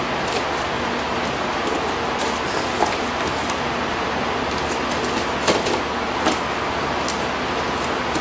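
Pocketknife blade cutting and scraping through packing tape on a cardboard box: a few short clicks and scratches, the clearest about three, five and a half and six seconds in, over a steady background hiss.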